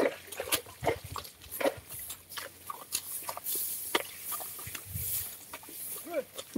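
A carabao hauling a wooden sled cart through a wet harvested rice field: a string of irregular short knocks, creaks and squelches from the cart and the animal's steps, with wind hiss in the middle.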